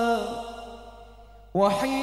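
A man's solo voice singing a sholawat (Islamic devotional song) through a microphone. A long held note fades away into a reverberant tail over the first half-second. About a second and a half in, the next phrase comes in, scooping up in pitch.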